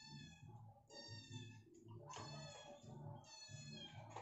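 A cat meowing, four faint high calls about a second apart.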